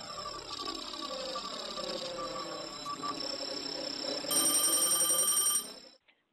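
Electronic synth music with sweeping, gliding tones. About four seconds in, a loud, rapidly pulsing telephone ring cuts in for about a second and a half: the call ringing through before it is answered.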